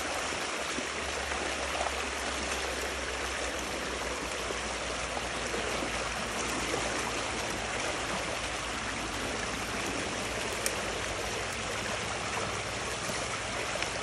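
Water rushing through a breach in a beaver dam of sticks and clay, a steady gush of strong current under high water pressure.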